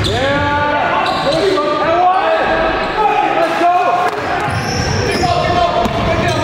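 Basketball being dribbled on a hardwood gym floor, with indistinct shouts from players, echoing in a large gym.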